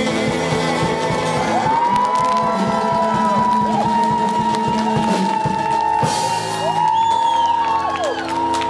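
Live rock band of electric guitars, bass and drum kit playing the closing bars of a song, with long held notes that bend down at their ends and a few whoops from the audience.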